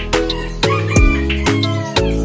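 Background music with a steady beat, with a rooster crowing over it in the second half.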